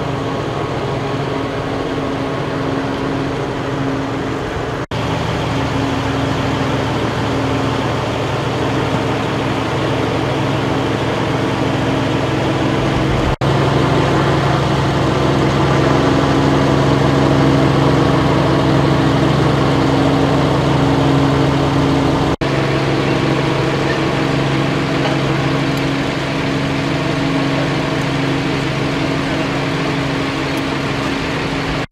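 A large vehicle engine idling steadily with a low, even hum, briefly cutting out three times.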